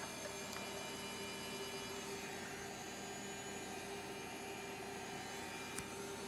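Steady low hum with a faint constant tone from the HP 1660C logic analyzer running as it boots from its hard disk after a firmware reflash.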